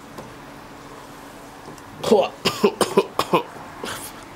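A man coughing, a quick run of about six short coughs starting about halfway through.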